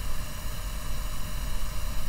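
Steady room tone of a voice recording: a low hum with hiss above it, and no other event.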